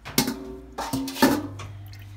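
Three sharp knocks, each followed by a brief ringing tone, with a low steady hum coming in about a second and a quarter in.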